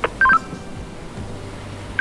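A click, then a short electronic beep from a ship's VHF marine radio: two quick tones stepping down in pitch, signalling an incoming call. The same beep comes again at the very end.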